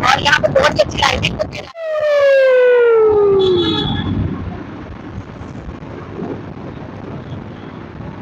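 A loud falling tone with overtones that slides steadily down in pitch for about a second and a half, starting abruptly: an added downward-whistle sound effect. It follows and is followed by the steady rush of wind and traffic heard from a moving two-wheeler.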